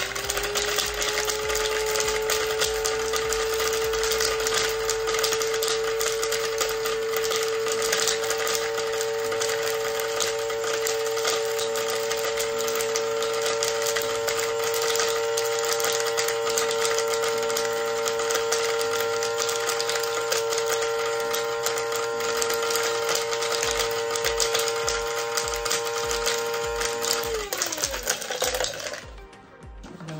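Electric blade coffee grinder running at full speed, a steady high motor whine over the rattle of hard dried ginger pieces being chopped to powder. About 27 seconds in, the motor cuts off and winds down, its pitch falling away.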